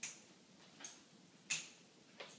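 Footsteps on a hard floor: three sharp, faint clicks at walking pace, about two-thirds of a second apart.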